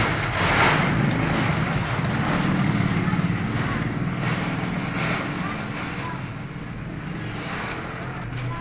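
Steady rumble of nearby road traffic or a running motor vehicle engine, growing quieter after about five seconds.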